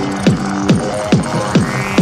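Peak-time techno: a kick drum beats steadily a little over twice a second under a held bass synth note, with short high percussion ticks.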